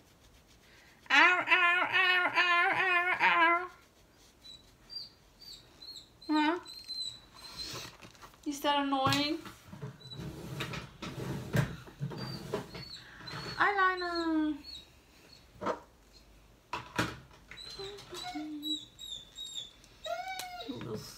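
A pet animal calling again and again: a long, wavering call starting about a second in, then shorter calls, a falling call about two-thirds of the way through, and many short high chirps between them.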